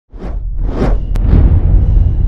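Channel logo intro sound effects: three swelling whooshes about half a second apart over a deep bass rumble, with one short sharp click a little after a second in.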